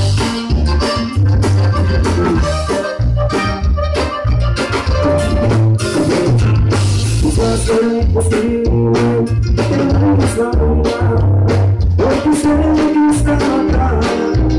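Live amplified band playing a Latin dance number: button accordion, congas, electric bass, drum kit and guitar together over a steady beat with pulsing bass.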